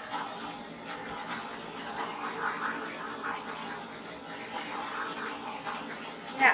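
Handheld torch burning with a steady hiss as its flame is passed over wet acrylic paint to bring up cells and bubbles.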